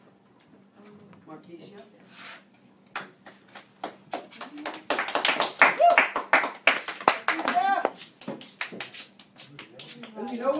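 A small group clapping. Scattered claps begin about three seconds in, build to steady applause in the middle, then thin out near the end, with a few voices mixed in.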